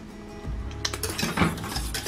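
A wire whisk clinking and scraping against a metal saucepan while stirring a thick sauce. The clicks start about a second in, over steady background music.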